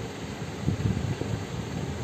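Steady background noise with a low, uneven rumble, like a fan or distant traffic, in a pause between recited verses.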